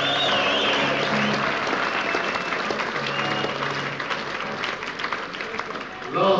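Concert crowd applauding and cheering between songs, heard from within the audience, with a shrill whistle in the first second. Low held instrument notes from the band sound underneath the clapping.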